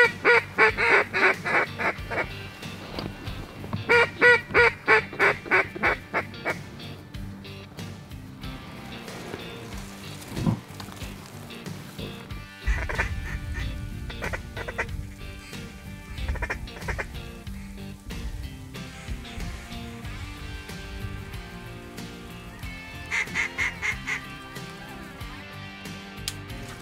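Runs of loud, rapid duck quacks, about six a second, in four separate bursts, the first two the loudest, over background music.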